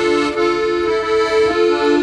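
Piano accordion playing an instrumental passage between sung lines: held notes that sound steadily, with a short repeating figure moving beneath them.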